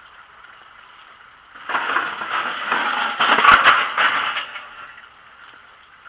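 A vehicle passing by: a noise that swells about a second and a half in, is loudest near the middle with two sharp clicks, and fades away about a second later.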